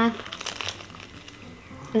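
A hummed 'mm' ends just as it begins, then faint crunching and small mouth clicks of people chewing toasted bread.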